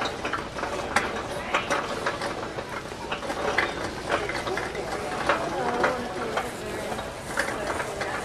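A store cart rolling over a concrete floor, its wheels and frame giving irregular rattles and clicks throughout.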